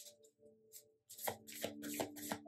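A tarot deck shuffled by hand: a few soft flicks of the cards, then from just past the middle a quicker run of card strokes as the deck is worked through the hands.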